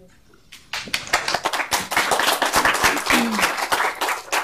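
Audience applauding: many hands clapping at once, starting about half a second in and staying dense and steady to the end.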